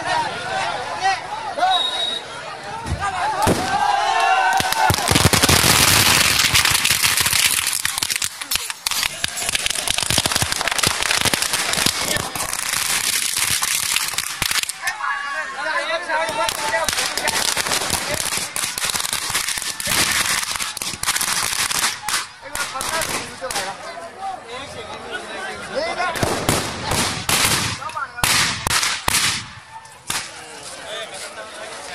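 Firecrackers in a burning Ravana effigy going off in dense, rapid crackling strings, loudest for a few seconds about five seconds in, over a crowd's voices.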